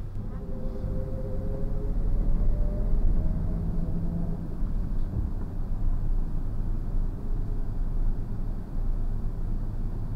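A passenger van's engine and cabin rumble heard from inside the van, growing louder a couple of seconds in as the van sets off from its bay.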